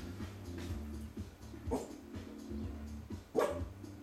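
Small dog barking twice: one bark a little under two seconds in and a louder one near the end.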